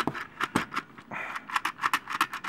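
Hard plastic clicks from a Transformers Armada Tidal Wave toy as a Minicon is pressed onto its Minicon spot to work the gimmick. Two single clicks are followed, about a second in, by a quick run of clicks, about eight a second.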